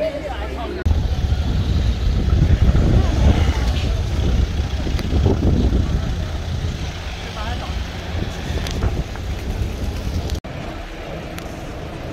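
Town-street traffic: motor vehicles running past with a heavy low rumble, mixed with people's voices. The rumble breaks off suddenly near the end.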